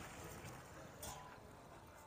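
Near silence: faint outdoor background, with one faint brief sound about a second in.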